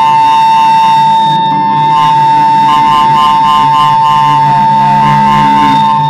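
Electronic house music from a synthesizer jam: one loud high tone held steady over a low bass line, with a higher tone pulsing rapidly for a couple of seconds in the middle.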